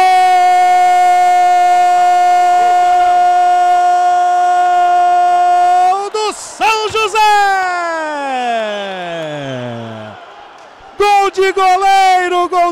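A TV commentator's drawn-out goal cry, a "gooool" held on one pitch for about six seconds, then a second long call falling steadily in pitch. Normal commentary resumes near the end.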